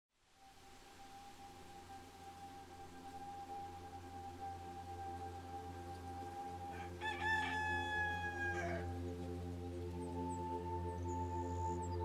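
A sustained ambient music drone of several held tones fades in from silence. About seven seconds in, a rooster crows once for about two seconds, its call dropping in pitch at the end. A few faint high chirps come near the end.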